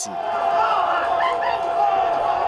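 Football stadium crowd noise: many voices blending into a steady din, with a steady tone running through it.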